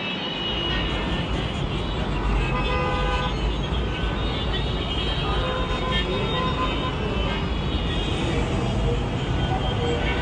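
Gridlocked city traffic: a steady rumble of idling and creeping vehicles, with many short car horns honking over it, overlapping throughout.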